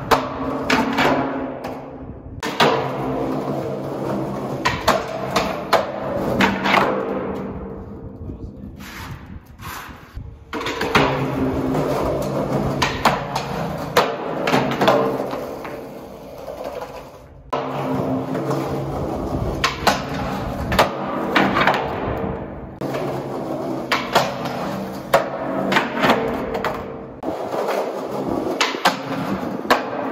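Skateboard wheels rolling over dusty concrete in a concrete tunnel, broken by many sharp clacks of the board popping and landing on the floor.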